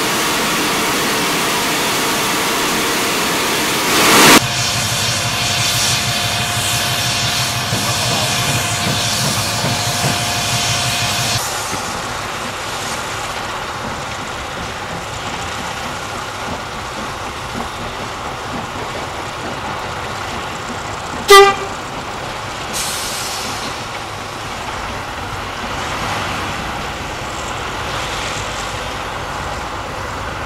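Saddle-tank steam locomotives in steam: loud steady hissing of escaping steam for the first dozen seconds, then quieter running sounds. A single short, loud whistle toot about two-thirds of the way through is the loudest sound.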